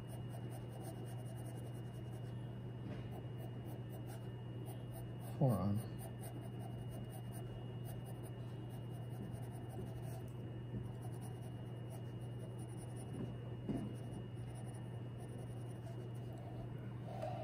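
Graphite pencil scratching on drawing paper in short, light sketching strokes, over a steady low hum.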